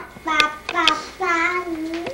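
Baby girl babbling in high-pitched vocal sounds: a few short calls, then one long drawn-out one that sinks a little in pitch. Two sharp taps sound during the short calls.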